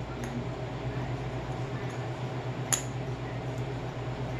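Cockatoo tapping its beak against a metal bowl: a faint tap just after the start, then one sharp clink about two and a half seconds in.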